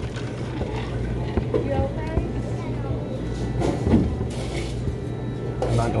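Restaurant dining-room ambience: a murmur of other diners talking, background music and a steady low hum, with a brief hiss a little past the middle.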